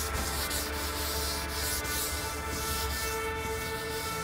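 A chalkboard duster rubbing chalk off a green chalkboard in quick back-and-forth strokes, a dry scraping hiss repeated two or three times a second.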